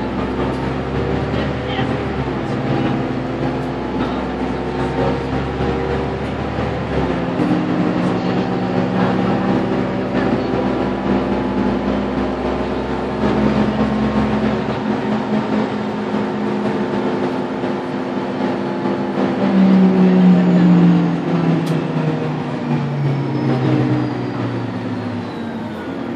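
Karosa B951E city bus engine and drivetrain heard from the front of the cabin while driving. Its pitch rises and falls with the driving, a deep rumble drops away about a quarter of the way in, and the bus is loudest about twenty seconds in.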